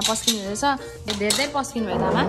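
Steel plates and a metal serving spoon clinking repeatedly as food is dished out, over voices and background music.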